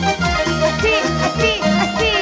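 Andean folk band music played live, with a steady beat and a high melody line that wavers up and down.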